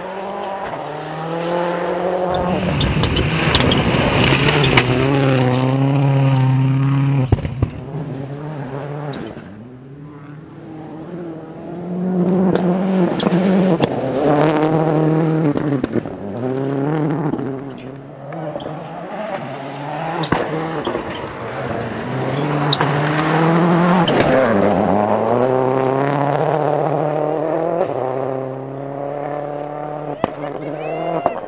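Ford Focus RS WRC rally car's turbocharged engine revving hard, its pitch climbing and dropping again and again with gear changes, swelling loud as the car passes and fading between passes, with tyres on loose gravel.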